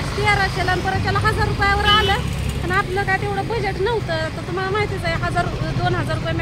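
A high-pitched voice talking almost without pause over the steady low rumble of street traffic.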